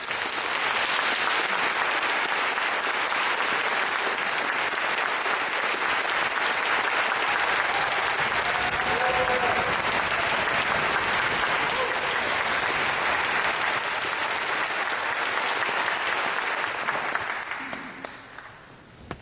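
Audience applauding steadily after a wind band performance, dying away near the end.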